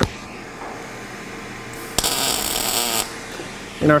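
MIG welding arc striking one tack weld of about a second on 10-gauge mild steel square tubing. It starts suddenly about two seconds in and stops sharply, with 0.035 solid wire under 75/25 argon-CO2 at 18 volts, settings the welder calls perfect. A steady fan hum runs underneath.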